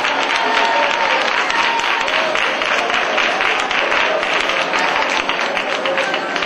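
A crowd clapping their hands together in a dense, continuous patter, with many voices praying or singing aloud underneath.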